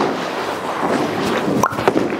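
Bowling alley noise: a steady rumbling hiss from the lanes, with a couple of sharp knocks near the end as a bowling ball is released and lands on the lane.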